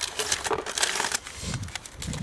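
Paper and a plastic bag crinkling and rustling as they are pulled out of a small cache container by hand, a dense crackle that is loudest over the first second or so and then thins out.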